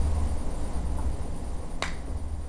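A single sharp click near the end, with a fainter click about a second in, over a steady low rumble.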